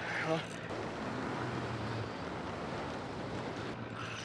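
Steady wash of wind and water noise around a small open boat on choppy water.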